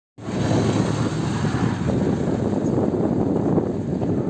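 Steady outdoor background rush that cuts in abruptly just after the start and holds at an even level.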